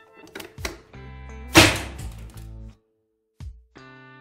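A single sharp shot about one and a half seconds in: the impact-test gun firing a hardened steel projectile into a ballistic eye shield, preceded by a few light clicks. Background guitar music plays underneath.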